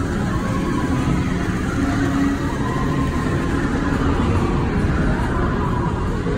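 Tomorrowland Transit Authority PeopleMover car gliding steadily along its track in the dark: a continuous low rumble with faint held tones above it.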